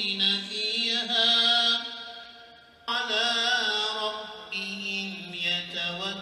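A solo male voice chanting a religious recitation at a funeral, in long melodic phrases with held, ornamented notes. It breaks for a breath about two seconds in, then starts a new phrase.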